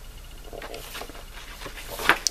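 Faint, soft paper rustling as a page of an old hardback yearbook is turned by hand.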